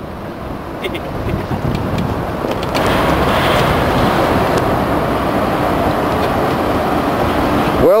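Steady road-traffic rush from the bridge deck overhead, heard from below, swelling louder about three seconds in.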